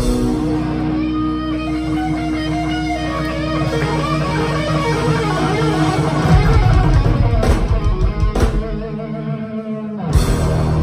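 Live rock band with electric guitars, bass and drums. A held guitar chord rings for about six seconds, then the drums come in heavily with two big cymbal-and-drum hits, before the sound eases off near the end.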